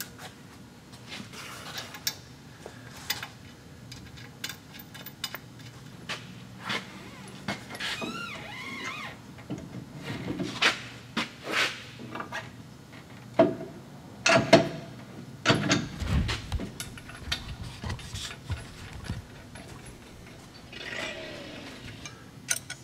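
Irregular metal knocks, clanks and clicks of a lift-kit steering knuckle and hand tools as it is worked onto a truck's upper and lower ball joints, with a busier run of louder knocks around the middle.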